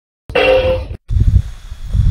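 A toy electronic drum's pad sets off its built-in snare sample once through the toy's small speaker: a short hit with a steady ringing tone. About a second in, a low rumbling noise follows.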